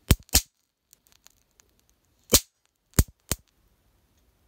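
Small charges of dry silver nitrotetrazolate detonating on aluminium foil. There are five sharp cracks: two in quick succession at the start, one about two seconds later, and two more close together near three seconds in, with faint ticks between them.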